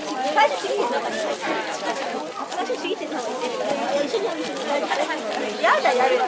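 Several people chattering at once in a steady babble of overlapping voices, with one voice rising sharply in pitch near the end.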